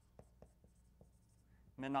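Dry-erase marker writing on a whiteboard: a few faint, short strokes, with a man's voice starting near the end.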